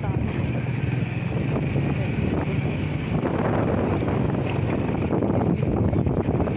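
A vehicle in motion, with a steady engine-and-road rumble and wind buffeting the microphone.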